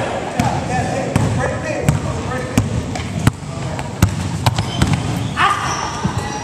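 Basketball bouncing on a hardwood gym floor in a pick-up game: sharp impacts at uneven intervals, with players' voices calling out. A short high squeak sounds near the end.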